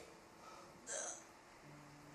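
A woman crying: one short, sharp sobbing catch of breath about a second in, between quiet stretches.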